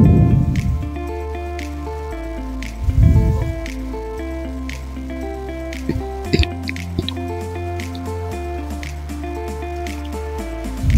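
Background music, with wet squelches of thick dosa batter being ladled onto a flat pan and spread: one right at the start and another about three seconds in. A few light clicks follow a little past the middle.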